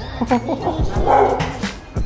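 Small dog barking and yipping several times in short bursts at a stranger.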